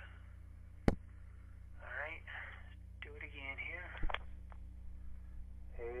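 A sharp click about a second in, a light being switched off, with a second, smaller click about four seconds in, over a steady low electrical hum.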